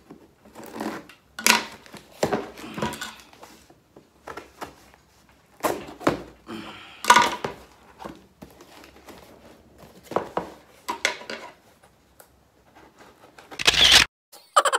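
Scissors slitting the packing tape on a cardboard box, with tape tearing and crinkling and the box rustling, in irregular bursts with the loudest just before the end.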